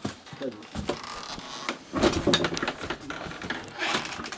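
Irregular knocks, clicks and rustling, with brief snatches of low voices about half a second in and around two seconds in.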